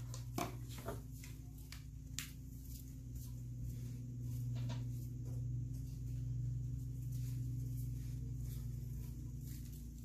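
Steady low hum of room background noise, with a few faint short clicks and knocks in the first few seconds.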